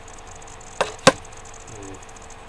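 Two sharp knocks or taps in quick succession, about a quarter second apart, the second one louder.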